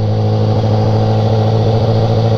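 BMW sport motorcycle's engine running at a steady low pitch as the bike rolls slowly at a constant throttle, with wind noise on the microphone.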